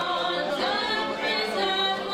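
A congregation singing a worship song together without instruments, many voices overlapping.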